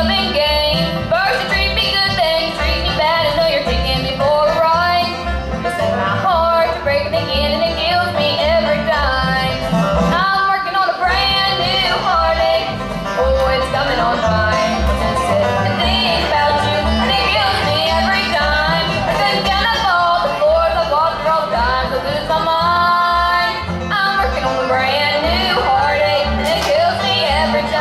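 Live bluegrass band playing a song on banjo, mandolin, acoustic guitar and upright bass, with a sliding melody line over the steady picking.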